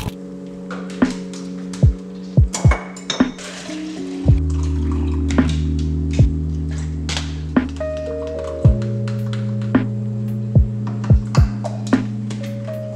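Background music with mellow sustained chords that change every few seconds over a deep kick-drum beat, mixed with short clinks of cups and kitchen items being handled.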